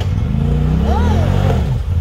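Side-by-side UTV engine revving up and down under load as it crawls over rocks, its pitch rising and falling over a deep steady drone.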